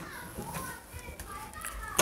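Background voices of people talking, a child's voice among them, quieter than the narration, with a click at the start and a knock at the very end.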